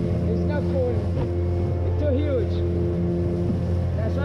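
Outboard motor of a small open boat running steadily under way, a constant low drone with a steady hum above it, over water and wind noise. Brief voices break in once or twice.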